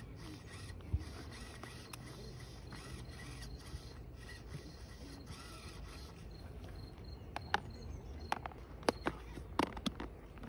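Several sharp plastic clicks and knocks as a clear plastic container lid is pressed and handled, clustered in the last three seconds, over faint outdoor background.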